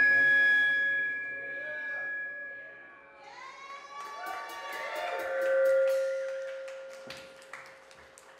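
Shoegaze band music: sustained, layered guitar tones that shift and glide about halfway through, with a few sharp hits, fading down over the last couple of seconds.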